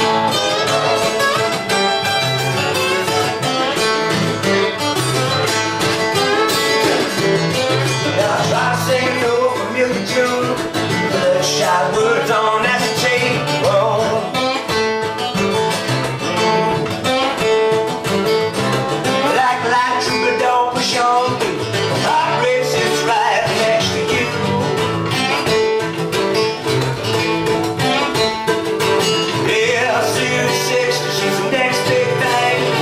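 Acoustic guitars strummed and picked in a live country song, with a melodic line over steady strumming.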